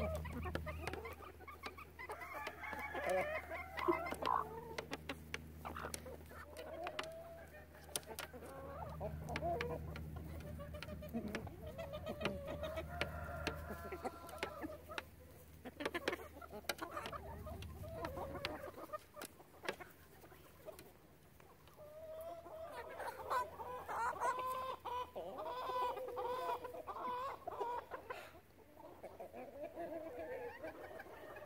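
Backyard hens clucking and murmuring continuously as they feed, with many sharp taps of beaks pecking feed from a plastic tray. A low steady hum underneath stops a little over halfway through.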